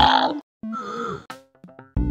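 A man's voice groaning in pain, falling in pitch, followed by a few faint clicks.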